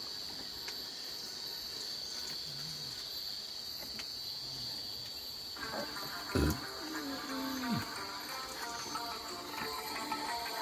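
Night insects calling with a steady, high, even drone. A little over halfway through, background music comes in, with a low falling swoop about a second after it starts.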